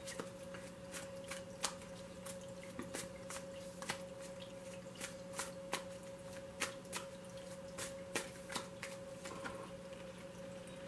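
A tarot card deck being shuffled by hand: a run of soft, irregular card clicks and flicks, over a faint steady hum.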